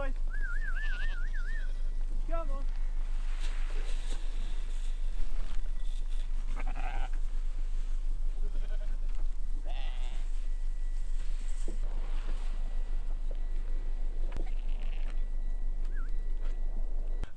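A flock of fattening lambs bleating several times, with a warbling whistle from the farmer calling them in the first couple of seconds. A steady low hum runs underneath.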